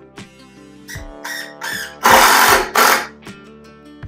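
A carpenter's power tool running in short bursts, the loudest lasting just under a second about two seconds in, followed by a brief last one. Acoustic guitar background music plays underneath.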